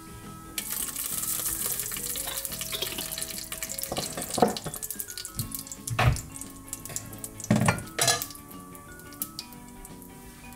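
Cumin seeds and a whole dried red chilli sizzling in hot oil and ghee in a steel pot: a sudden loud sizzle starts about half a second in and thins into crackling, with a few sharp knocks later on.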